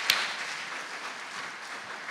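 Congregation applauding, the clapping slowly dying down.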